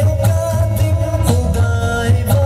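Urdu devotional song (a hamd praising God) with a long held sung note over a backing track with a steady beat.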